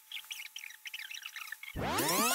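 Birds-chirping sound effect, many short irregular chirps, dropped in as a gag to mark an awkward silence. Just before the end, a much louder swooping sound effect cuts in.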